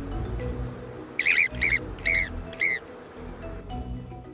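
Four short, high-pitched calls from a golden marmot, about half a second apart, over steady background music.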